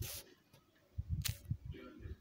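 Sharp clicks and soft knocks of a smartphone being tapped and handled: one crisp click at the start, a few soft low knocks about a second in with another click among them, then a faint murmur of voice near the end.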